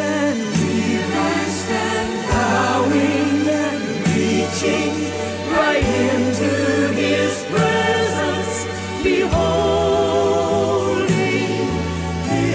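Gospel choir singing held, wordless-sounding notes with vibrato over instrumental accompaniment and a steady bass line that changes note every couple of seconds.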